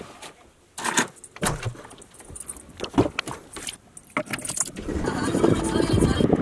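Keys jangling amid quick clicks and rattles of handling, then, from about five seconds in, a louder continuous rumble inside a car.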